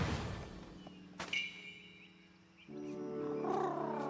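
Cartoon sound effects of a phoenix's fiery swoop: a whoosh that fades out, then a sharp sparkling hit about a second in. Background music swells in later with sustained chords and a warbling, bird-like call.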